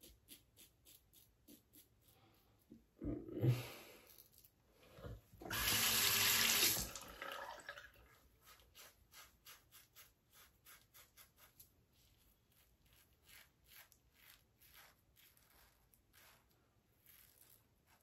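A water tap runs briefly into a sink for about a second and a half, a few seconds in, as the razor is rinsed. Around it, faint short scraping strokes of a stainless steel safety razor cutting through lathered stubble repeat in quick succession.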